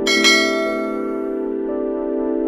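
A bright bell-like chime sound effect rings out at the start, struck twice in quick succession and fading. It plays over background music of held keyboard chords.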